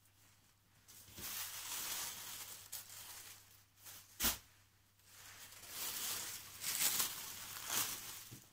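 Tissue-paper sewing pattern pieces and fabric rustling and crinkling as they are handled, with a single knock about four seconds in.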